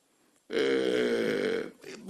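A man's drawn-out hesitation sound, a held "eh" at a steady pitch lasting about a second, starting after a brief near-silent pause.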